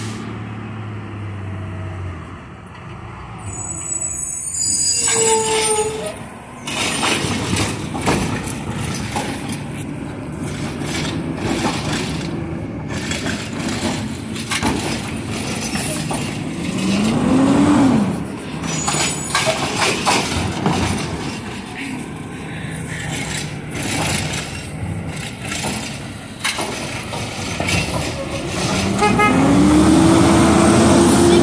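Mack side-loader garbage truck approaching and pulling up to the curb, its engine getting louder as it nears. There is a high brake squeal a few seconds in. The engine revs up and back down about two-thirds of the way through, and revs rising again near the end.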